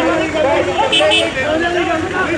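Crowd of men talking and shouting over one another in loud, raised voices, with two brief high-pitched squeaks about a second in.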